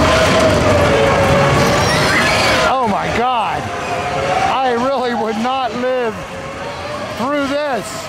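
A carnival ride running with a loud mechanical din and a wavering hum. From about three seconds in, a voice lets out a series of short rising-and-falling whoops over it, in several groups.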